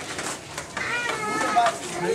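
A kitten meowing with high, thin calls, the clearest a little under a second in, over people talking in the background.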